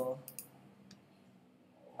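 A few faint computer mouse clicks in the first second, over quiet room tone.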